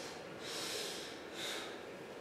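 Two short, breathy snorts of air through the nose, about a second apart.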